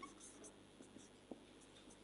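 Faint strokes of a marker pen writing on a whiteboard, with one small tick a little past a second in.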